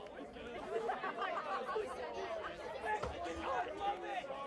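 Several voices talking over one another in the open air, a steady murmur of chatter with no single clear speaker: sideline talk among players and spectators.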